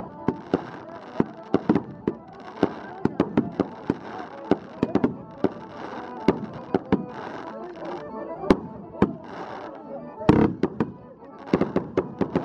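Piano accordion playing amid a crowd's voices, with many sharp bangs going off at irregular intervals.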